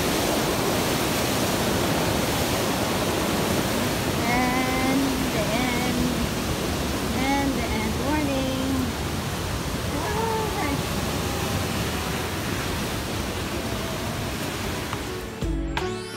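Steady rushing of a river pouring over rocks in a small waterfall, with brief voices in the middle. The rushing cuts off near the end as music starts.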